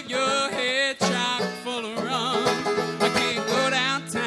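Banjo picked in an instrumental break of a jug-band style folk song, a quick run of plucked notes, with a wavering pitched melody line over the picking.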